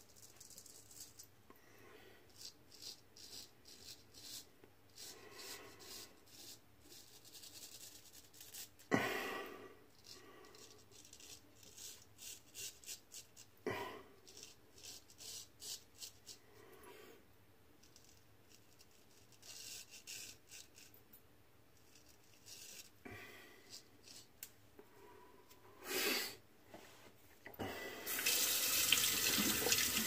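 Gold Dollar 66 straight razor scraping through lather and stubble in short repeated strokes, with two sharper knocks along the way. Near the end a faucet runs steadily into the sink.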